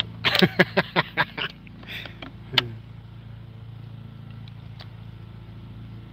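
A man laughs in a quick run of short bursts in the first second and a half, over a steady low engine hum that runs throughout.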